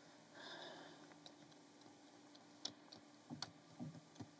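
Near silence, broken by a few faint, short clicks and scrapes of a razor-blade scraper on wet car window glass, coming closer together in the last second and a half as short strokes begin.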